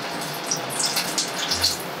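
A steady hiss like running water, with faint irregular crackles throughout.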